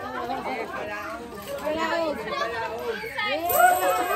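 A group of adults and children chattering and calling out over one another, with one louder, higher voice a little before the end.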